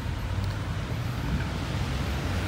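Steady low rumble of road traffic, with engines running.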